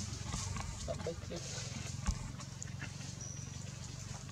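Short, soft monkey calls over a low outdoor rumble, with a single knock about two seconds in.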